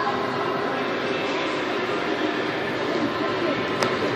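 Steady background din of a busy indoor public space, with faint voices in the distance.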